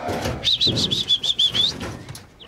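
Gemsbok moving in a wooden-pole crush: a rapid clatter of sharp knocks from hooves and horns striking poles and boards. Over it comes a quick run of about nine high, repeated chirps, starting about half a second in and stopping just before the end.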